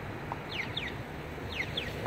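Accessible pedestrian signal's walk chirp, sounding as the walk phase comes on: pairs of quick falling electronic chirps, one pair about every second.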